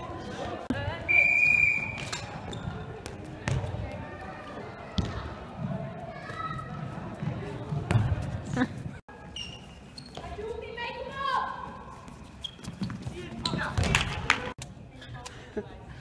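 A handball bouncing and thudding on a sports-hall floor at irregular intervals, with indistinct players' voices ringing in the large hall. About a second in there is a brief high squeak.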